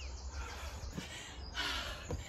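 A harsh bird call near the end, over faint garden birdsong and a low steady hum, with a soft thud of a jump landing about a second in.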